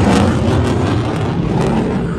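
F-16 fighter jet flying past, its engine giving a loud, steady jet roar with a deep rumble underneath.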